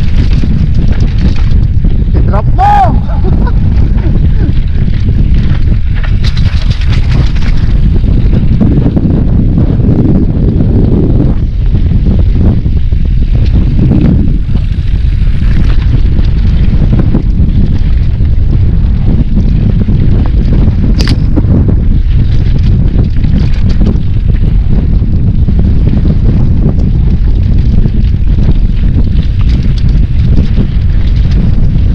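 Wind buffeting the microphone of a helmet-mounted camera on a mountain bike descending dirt singletrack, a loud steady rumble with scattered clicks and knocks from the bike over rough ground. A brief high-pitched sound rings out about three seconds in.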